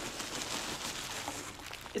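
Plastic bubble wrap rustling softly and foam packing peanuts shifting as a wrapped package is lifted out of a box of them.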